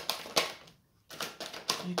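Tarot cards being handled: sharp clicks and flicks as a card is drawn from the deck and laid on the table, with a brief pause in the middle before a further run of clicks.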